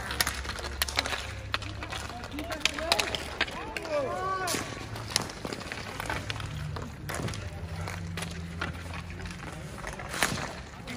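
Street hockey sticks clacking against the ball and the asphalt in scattered sharp knocks throughout, with players shouting to each other, loudest about three to five seconds in.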